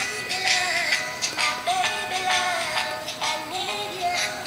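A song with a sung vocal over a beat, played as a custom ringtone from a mobile phone's small speaker.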